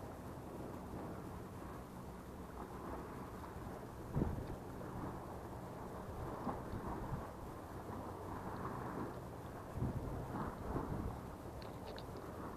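Low rumble of wind and clothing rubbing on a body-worn camera's microphone, with a few dull thumps about four seconds in and again near ten seconds.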